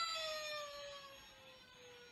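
A man's drawn-out falsetto whine, one long tone that slides slowly down in pitch and fades away in the second half.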